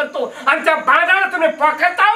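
Speech only: men talking in conversation.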